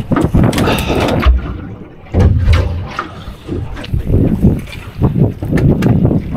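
Wind buffeting the microphone over water slapping against a small boat's hull, in uneven gusts with a short lull about two seconds in.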